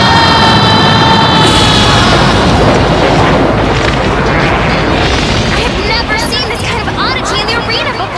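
A long held shout, then a continuous heavy rumbling blast effect as giant plants erupt from the ground, with short shrill squeals near the end.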